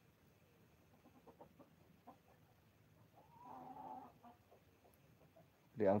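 A chicken clucking faintly, with a drawn-out call of about a second a little past the middle.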